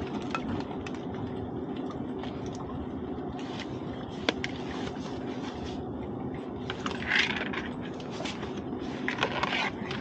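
Hands rummaging inside a netted lobster pot to grab a lobster: a few sharp clicks and scraping, rustling handling noises, louder about seven seconds in and again near the end, over a steady low hum.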